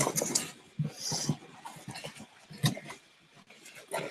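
Handling noise from rummaging in a cardboard box of beer bottles: scattered knocks and clicks, with a brief rustle about a second in.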